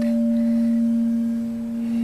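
Frosted quartz crystal singing bowl sung by a wooden wand rubbed around its rim, giving a steady, pure sustained tone with fainter higher overtones.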